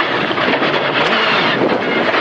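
Skoda rally car's engine at high revs, heard from inside the cabin, its pitch falling and rising through the corner, over a steady rush of tyres on loose gravel.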